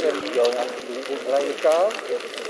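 Mostly people's voices talking, one rising and falling strongly near the end, over faint scattered crackles from a small campfire.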